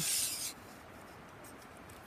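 Aluminium telescoping section of a Black Diamond trekking pole sliding through its opened flick-lock clamp: a brief scraping rub lasting about half a second.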